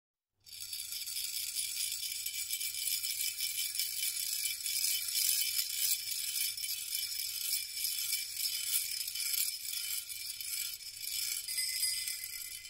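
Shaken metal jingles playing alone as music: a dense, continuous jingling that starts out of silence about half a second in.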